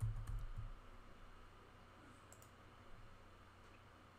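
Faint clicks of a computer keyboard and mouse: a few quick taps in the first second, then a couple of fainter clicks about halfway through.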